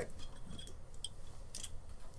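A few light clicks and brief rustles of small metal dental instruments being handled, spaced irregularly through a quiet stretch.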